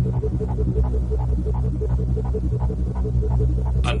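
Synthesizer sequencer pattern playing alone: a low throbbing bass drone under a quick, evenly repeating pulse, about six notes a second. This is the first layer of an electronic dance track.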